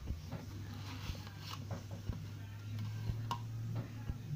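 A clock ticking about once a second, sharp even clicks over a steady low hum.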